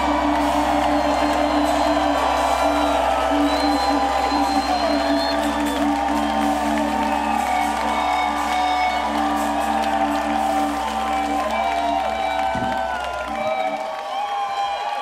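A live soul band holds a sustained closing chord over a low bass note while the crowd cheers and whoops. The bass note cuts off about a second before the end, leaving the cheering.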